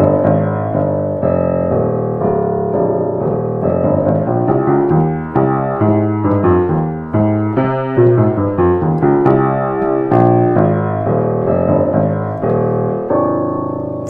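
Hagspiel grand piano of about 1870 being played, a run of notes and chords through the bass and middle range with a held chord near the end. The instrument is badly out of tune, having gone untuned for a very long time.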